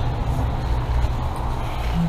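A steady low rumble of outdoor background noise with no clear events in it.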